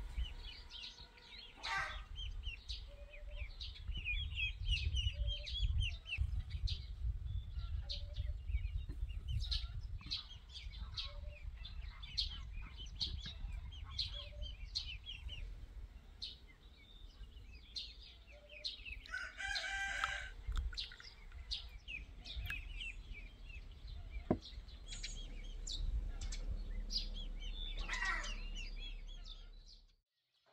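Rural outdoor ambience: small birds chirping throughout, with a rooster crowing twice, about two-thirds of the way in and again near the end, over a low rumble.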